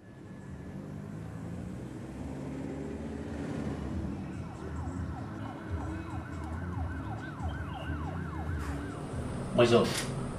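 A siren yelping in quick rising-and-falling sweeps, about three a second, from about four seconds in until just before the end, over a steady low rumble.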